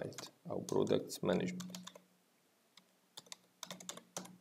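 Typing on a computer keyboard: a run of quick keystroke clicks, thickest in the last second.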